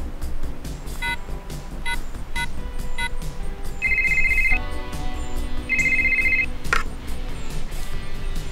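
A brick-style cellular phone sounds four short electronic beeps. It then rings twice with a trilling electronic ring, the rings about two seconds apart, and a sharp click follows shortly after the second ring.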